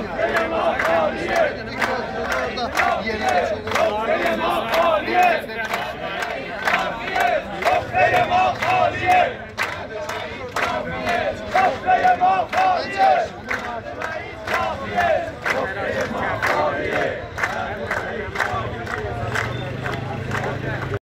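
A crowd of protesting retirees shouting slogans in unison, with a regular sharp beat about twice a second keeping time under the chant.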